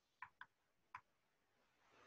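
Near silence broken by three faint, short clicks: two close together, then a third about half a second later.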